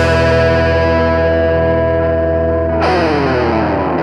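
Closing of a rock song: a distorted guitar chord held and ringing, then struck again about three seconds in with a slide down in pitch.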